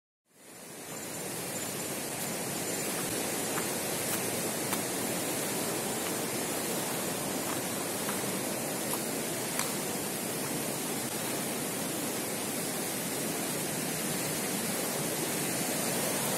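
Steady rushing of flowing water, like a mountain stream or waterfall, with a few faint clicks.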